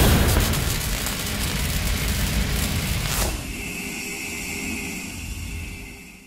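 Logo sting sound effect: a deep cinematic boom hits at the start and rumbles on, then about three seconds in a quick falling swoosh gives way to a steady high ringing tone that fades out near the end.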